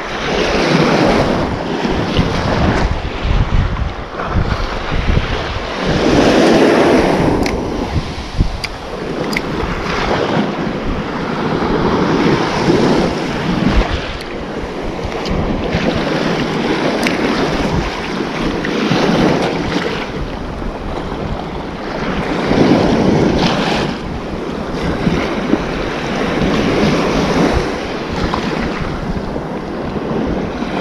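Small waves washing up onto a sandy shore, with wind buffeting the microphone. The wash surges and falls back every few seconds.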